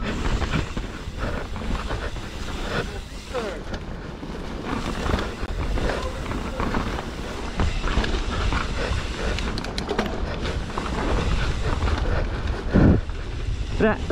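Mountain bike descending a dirt forest singletrack at race speed: wind buffeting the microphone over the steady rattle and clatter of the bike and its tyres on the dirt, with a louder thump near the end.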